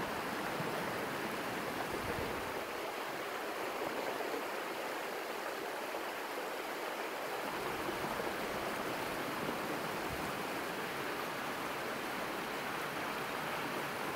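Muddy flash-flood water rushing down narrow streets: a steady, even rush of water.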